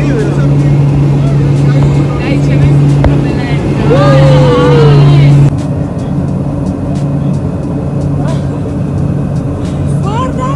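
Small propeller plane's engines drone steadily inside the cabin, with passengers talking and calling out over them. A long drawn-out shout rises and falls about four seconds in. About halfway through the voices drop away, and the engine drone carries on on its own.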